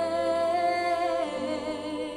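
Slow orchestral music under wordless voices humming a sustained chord: a high held note wavers slightly over a steady bass note, and the chord moves about a second in.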